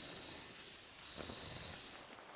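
Chickens making soft, low churring clucks, faint, with a few short clucks a little past the middle, over a thin steady high-pitched whine.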